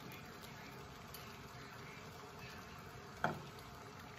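Pot of water at a rolling boil, bubbling steadily and faintly, with a single short knock about three seconds in.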